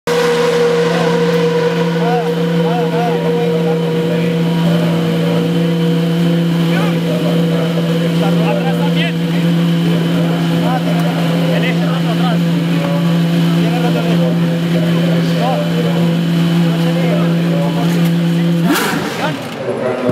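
Single-seater racing car's engine idling at a steady pitch, then cutting out abruptly near the end: the engine stalls, and the crew calls for it to be restarted. Faint voices are heard underneath.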